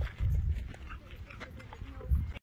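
Spotted hyena chewing and crunching watermelon, with scattered wet crunches and clicks of its jaws. A loud low rumble comes a fraction of a second in.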